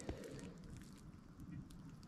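Faint outdoor ambience: a low, even rumble with a few light clicks, one just at the start.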